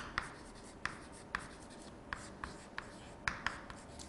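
Chalk writing on a chalkboard: a string of short scratches and sharp taps at irregular intervals as letters are formed.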